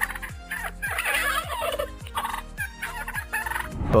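Domestic turkey toms gobbling. A long rattling gobble comes about a second in, followed by shorter calls.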